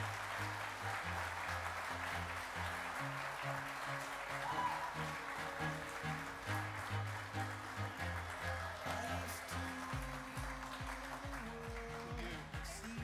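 Audience applauding over music with a steady bass line.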